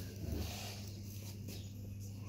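Quiet room tone dominated by a steady low hum, with a brief faint sound about a quarter of a second in.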